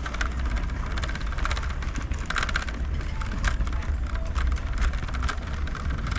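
Shopping trolley being pushed across a supermarket floor: a steady low rumble of the rolling wheels with a fast, continuous clicking rattle.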